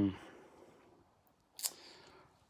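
A drawn-out spoken 'um' trailing off at the start, then near quiet broken by a single brief, crisp handling sound from the hardcover art book being held, about one and a half seconds in.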